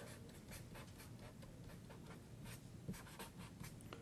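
Marker pen writing on paper: a string of short, faint, irregular strokes.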